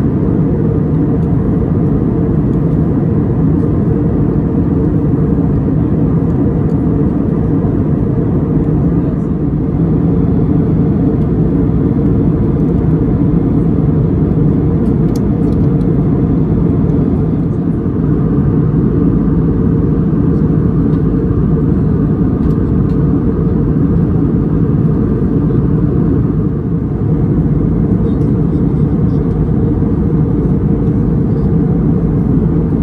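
Steady cabin noise of a jet airliner in cruise: the even, deep drone of the engines and airflow heard inside the cabin by a window seat.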